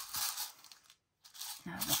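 Handling noise from a plastic multi-compartment box of small metal eyelets being picked up and turned over, in two short spells about a second apart.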